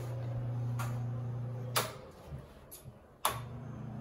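A steady low hum, broken by a sharp click about two seconds in. It stays quieter for about a second and a half, then another sharp click comes and the hum starts again.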